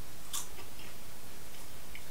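A person chewing a mouthful of microwave popcorn: a faint crunchy click about a third of a second in and a few softer ones after, over a steady background hiss.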